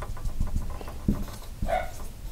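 A dog growling in short low spurts in the background, with a brief higher-pitched note near the end.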